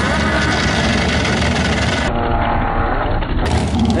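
Turbocharged 20B three-rotor rotary engine in a Mazda RX-7 FD running hard at full throttle as the car launches down a drag strip, a launch hard enough to lift the front wheels. The sound changes abruptly about halfway in.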